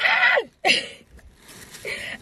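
A loud, breathy burst of laughter with a high squeal, then a short cry that falls in pitch, dying down about a second in.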